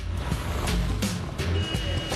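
Background music over street traffic noise from passing cars, with a thin high beep held for about half a second near the end.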